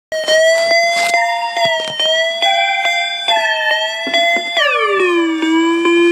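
Hip-hop beat intro: a sustained synth lead holds one note after another over drum hits, then slides down to a low held note about three quarters of the way through.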